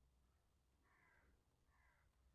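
Near silence, with two very faint short sounds about a second in and near the end.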